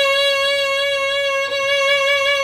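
Violin playing one sustained bowed note with a narrow, even vibrato. It demonstrates controlled vibrato, each wave of pitch deliberate, as opposed to the tense, uncontrolled vibrato of a player who is tensing up the arm.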